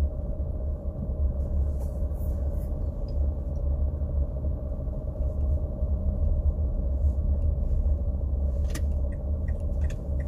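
Cabin noise of a car driving slowly along an unsealed dirt track: a steady low rumble of engine and tyres, with a faint steady hum and a few light ticks.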